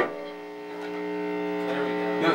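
Electric guitar amplifier humming steadily between phrases once the playing stops. A few faint plucked notes come in near the end.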